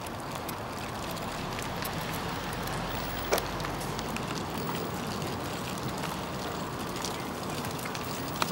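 Baby stroller rolling along pavement: a steady rolling noise with scattered small clicks and rattles, and one sharper click about three seconds in.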